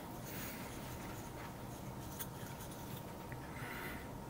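Faint scraping and a few light clicks of pine sticks being handled and a square wooden peg being pressed into a drilled hole.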